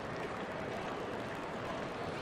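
Steady, low murmur of a baseball stadium crowd, with no single sound standing out.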